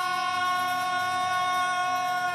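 A male singer holding one long sung note steady through a microphone and PA, over a sustained acoustic guitar chord.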